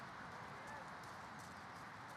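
Footfalls of several runners on wet, muddy grass as they pass close by, over steady outdoor background noise.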